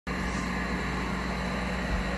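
A steady low hum at constant loudness, with no change across the two seconds.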